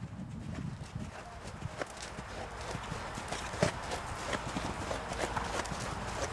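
Hoofbeats of a horse cantering on sand arena footing, heard as irregular sharp clicks over a low rumble, as it approaches and takes off over a fence.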